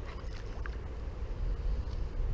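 Steady low rumble of wind buffeting the microphone, with a few faint small ticks and no clear single event.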